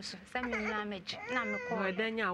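Speech only: a woman talking steadily in a studio.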